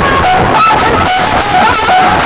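Very loud music blasting from a tall rack of dozens of aluminium horn loudspeakers, during a sound-system song competition. A nasal, wandering melody line sits over a dense, harsh noisy background.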